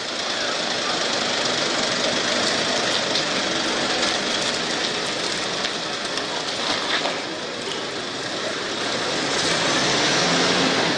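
Ambulance van's engine running as it moves off, heard under a steady, even hiss of outdoor noise, with a few faint clicks.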